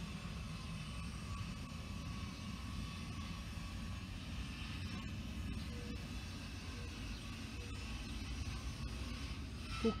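A steady low rumble of background noise, even in level throughout.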